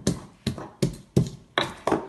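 Pestle pounding garlic and ginger in a mortar, a steady run of knocks about three a second, crushing them to a paste.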